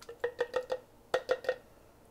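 A spoon tapping on the rim of a metal pot in two quick runs of three or four taps, each tap ringing briefly: cherry pie filling being knocked off the spoon.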